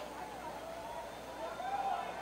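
Faint distant voices over low background noise.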